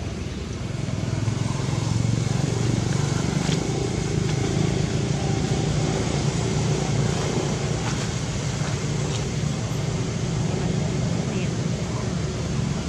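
A steady low rumble like a running motor, swelling over the first couple of seconds and then holding.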